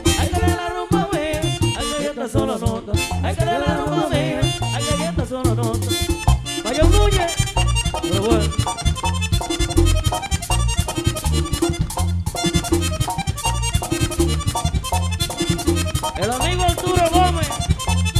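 Live merengue típico band playing an instrumental passage with the button accordion leading. The accordion runs quick melodic lines over a fast, driving dance beat from the tambora, güira and bass.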